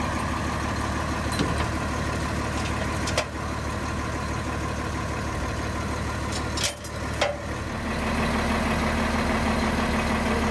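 Diesel engine of a Tiffin Allegro Bus motorhome idling steadily, with a few sharp metallic clicks from the trailer hitch and safety chains being unhooked. The loudest pair of clicks comes about seven seconds in, and the engine hum grows a little louder near the end.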